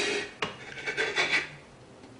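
A man crying: a long ragged breath, a short click about half a second in, then a run of short, shaky sobbing breaths.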